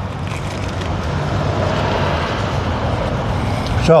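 A road vehicle going by, its noise swelling through the middle and easing off near the end, over a steady low hum.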